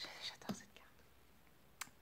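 A woman's faint whispered words in the first half second, then near silence with a brief faint click near the end.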